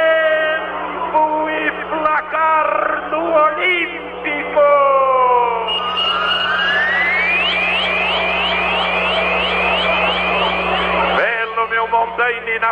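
Radio broadcast jingle: a musical, voice-like opening, then a run of rising electronic sweeps at about three a second over a steady low hum, cutting off suddenly about eleven seconds in.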